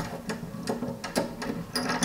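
Brass top cap of a pressure reducing valve being unscrewed by hand: a series of light, irregular metallic clicks and scrapes from the threads and fingers on the fitting.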